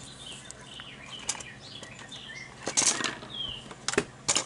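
A folded square sheet of origami paper being handled and pressed by hand: scattered rustles, crinkles and small squeaks, loudest about three seconds in, with a sharp crackle near the end.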